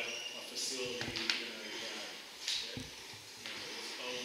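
Speech: a person talking in a meeting room, with a few light knocks.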